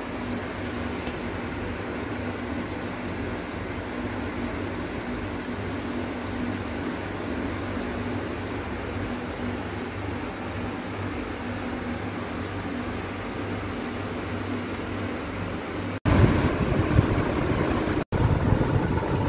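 Steady hum of an induction cooktop's cooling fan, with faint low tones, while the cooktop heats a pan of milk. About sixteen seconds in it cuts abruptly to a louder, rougher noise.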